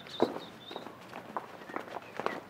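Footsteps on a cobbled stone street: a series of irregular sharp steps, the loudest about a quarter second in. A faint thin high tone sounds during the first second.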